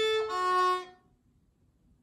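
Violin playing two bowed notes: open A held from before, then, just after the start, a change to F# with the second finger placed high on the D string. The playing stops about a second in.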